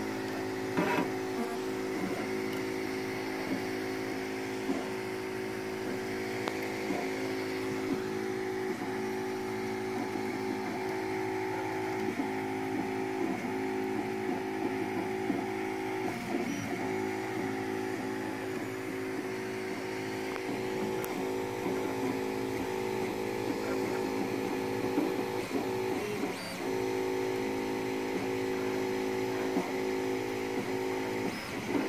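Monoprice Select Plus 3D printer printing: its stepper motors whine in several steady pitched tones that shift as the print head changes its moves, over the steady whir of the cooling fans, with small ticks.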